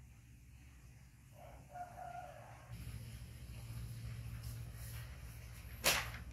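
A rooster crowing once, faint, for about a second and a half, with a wavering pitch. A steady low hum comes up about halfway through, and a sharp knock near the end is the loudest sound.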